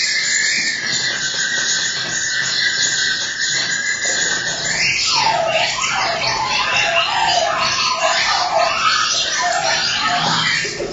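Live electronic noise music played from a laptop and a hand controller: a dense, hissy high band that, about halfway through, breaks into a lower, choppier texture.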